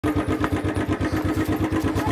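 Motorcycle engine running steadily at low revs, a fast even putter of about a dozen beats a second.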